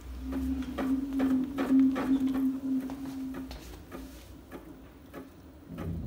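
Homemade 2500 W permanent-magnet alternator with 32 neodymium magnets and 12 coils, spun by hand while charging batteries. It gives a steady hum with a low rumble and scattered clicks, dying away after about three and a half seconds as the rotor slows.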